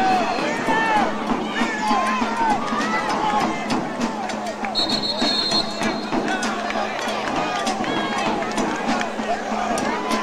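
Many voices shouting and cheering at once from players and spectators on a football sideline, loud and overlapping with no single voice standing out. About halfway through, a referee's whistle blows once for about a second.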